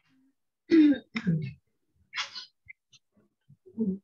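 A person clearing their throat: two rough bursts about a second in, then a short breathy hiss, with a brief bit of voice near the end.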